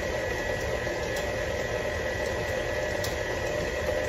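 KitchenAid stand mixer running steadily at an even speed as its flat beater turns through pound cake batter, with a thin steady whine over the motor hum.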